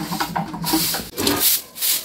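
Broom sweeping a concrete floor: a run of short swishing strokes, several in a row.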